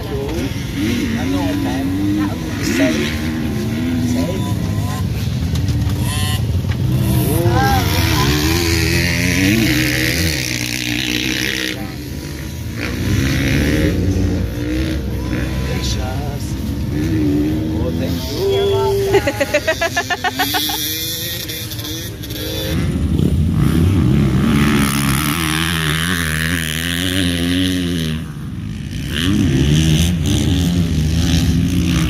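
Dirt bike engines running and revving repeatedly, with voices talking over them.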